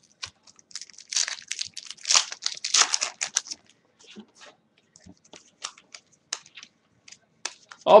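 A trading card pack's wrapper being torn and crinkled for a couple of seconds, then the cards handled and flicked through with scattered light ticks and snaps.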